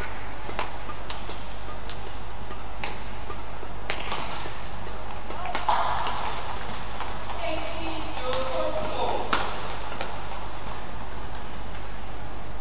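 Badminton racket strikes on a shuttlecock during a rally: sharp cracks spaced irregularly, about a second or more apart. Voices rise in the hall around the middle of the stretch, over a steady arena hum.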